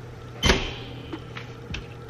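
Horizontal window blinds being lowered: a loud rattling clatter of the slats about half a second in, followed by a few lighter clicks.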